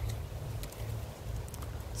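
Wind buffeting the microphone: an unsteady low rumble, with a few faint ticks.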